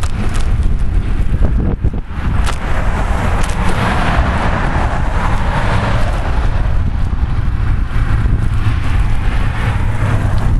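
Wind rumbling on a bike-mounted camera's microphone while cycling beside a road, with passing cars' tyre noise swelling and fading through the middle and again near the end.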